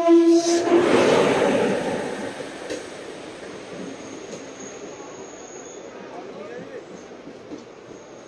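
Indian Railways electric locomotive sounding a loud, steady horn that cuts off about a second in, as the train rolls along the platform. Then the clatter and rumble of passenger coaches passing close by, fading to a steadier, quieter rolling with a faint high squeal in the middle.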